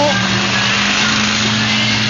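Monster truck engine running at a steady speed, a low, even drone, as the truck drives across the grass arena.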